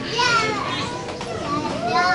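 Unamplified voices among the congregation, with a child's high-pitched voice prominent.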